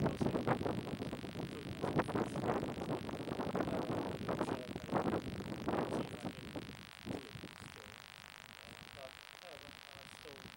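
A man talking, the words unclear, until about seven seconds in; then a low, quieter background with a few faint brief sounds.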